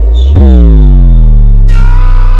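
Very loud, heavily bass-boosted, distorted meme sound with a deep pitched tone that slides slowly down in pitch from about half a second in. A harsher, brighter layer joins near the end.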